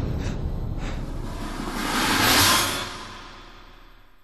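TV-drama soundtrack: a rushing whoosh over music that swells about two seconds in, then fades away toward the end.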